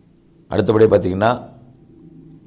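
A man's voice narrating one short phrase in Tamil, starting about half a second in, with a faint low hum in the pauses around it.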